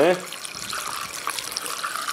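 Liquid fuel additive pouring in a thin, steady stream from a bottle into a plastic funnel and down a car's fuel filler neck, a continuous trickling splash.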